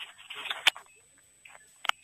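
A few sharp clicks, the loudest about two-thirds of a second in and another near the end, with a brief soft hiss between the first two.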